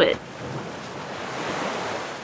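Ocean surf washing over a beach, a rushing hiss of waves that swells gradually.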